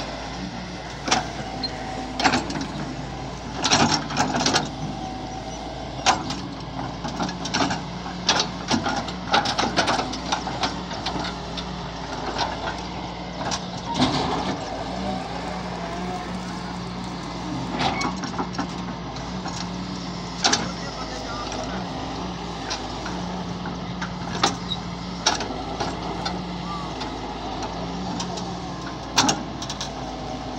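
Doosan DX140W wheeled excavator's diesel engine running under load, its pitch stepping up and down as the hydraulics work. Frequent sharp clanks and scrapes come from the bucket dragging soil to level the ground.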